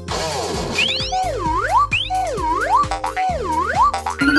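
Cartoon sound effects over children's background music: a swooping tone that dips and rises again, repeated about once a second, with a couple of quick rising whistles about a second in.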